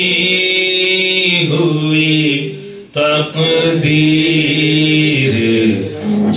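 A man singing a naat, a devotional poem in praise of the Prophet, into a microphone in long, drawn-out melodic phrases, with a short break for breath just before three seconds in.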